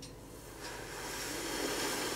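A long breath blown through pursed lips onto the wet acrylic paint on the upturned cup. It is a steady hiss that starts about half a second in and grows louder.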